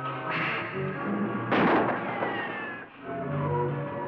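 Dramatic orchestral film score with a loud gunshot about a second and a half in, a lighter crack near the start, and a falling whine trailing after the shot.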